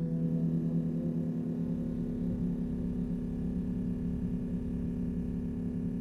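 Electro-acoustic ambient music: a steady low drone with a wavering pulse, under metallic gong-like ringing overtones that fade away over the first couple of seconds.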